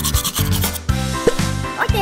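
Toothbrush scrubbing on teeth in quick, rhythmic strokes through the first second, over children's backing music with a steady beat.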